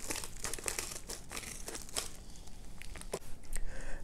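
White plastic poly mailer crinkling as it is handled and cut open with scissors: a quiet, irregular run of small crackles.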